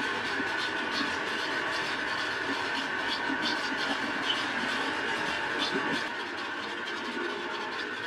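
Air conditioner unit's fan running steadily, a whir with a faint high whine; it gets a little quieter about six seconds in.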